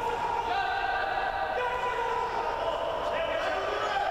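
Indistinct voices of people in a large sports hall, with a steady mix of held tones running underneath.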